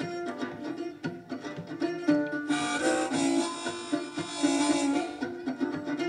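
Blues mandolin picked in a steady rhythm, starting right at the outset. About two and a half seconds in, a rack-held harmonica joins with a long bright chord lasting nearly three seconds, then the mandolin carries on alone.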